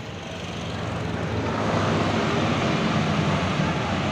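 Diesel intercity coach driving past close by, its low engine rumble growing louder over the first two seconds and then holding, over road traffic noise.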